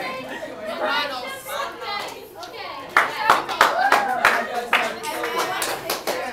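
Many students talking at once in a classroom. About halfway through comes a run of about seven sharp claps, louder than the voices.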